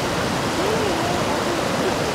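Mountain stream rushing over and between boulders, a steady even rush of water. A faint voice is heard briefly in the middle.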